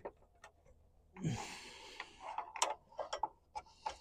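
Light clicks and taps of hands handling the metal roof-rack crossbar and the solar panel's wiring, with a short rustle about a second in and four or five separate sharp clicks in the second half.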